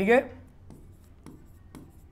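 Stylus writing on the glass of an interactive display board: a few faint taps and scrapes as numbers are written, following a brief spoken word at the start.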